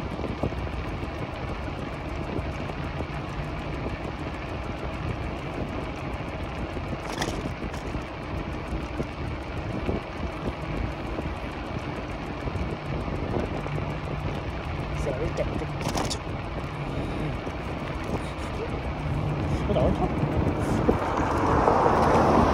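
Riding noise from an e-bike: tyres rolling on asphalt and wind on the microphone, with a faint low motor hum that comes and goes. There are two sharp clicks along the way, and the noise swells louder near the end.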